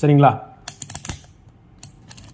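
Rotary selector dial of a MAS830L digital multimeter being turned, clicking through its detents: a quick run of about half a dozen clicks, then another click near the end, as the meter is set to continuity mode.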